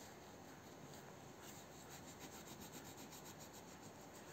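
Faint, quick scratching strokes of colouring on paper, starting about a second and a half in at roughly seven strokes a second.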